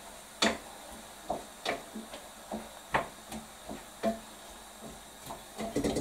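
A cooking utensil knocking and clinking against a pot as cabbage is stirred: irregular sharp knocks about once a second, some ringing briefly.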